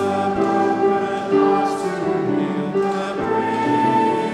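Congregation singing a hymn together, in held notes that move through a melody.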